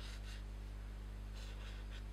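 Faint strokes of a marker sketching on paper, two short scratchy passes, over a steady low electrical hum.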